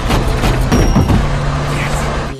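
Action-film soundtrack of a car chase: a car engine running with a steady low drone, several sharp knocks over it, and film music and a man's voice in the mix.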